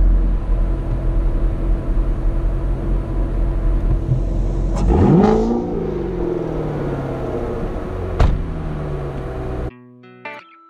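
Chevrolet C7 Corvette Grand Sport's 6.2-litre LT1 V8 running at idle, blipped once about five seconds in so the pitch shoots up and then falls slowly back. A sharp click comes just before the blip and another about eight seconds in, and the engine sound cuts off abruptly shortly before the end.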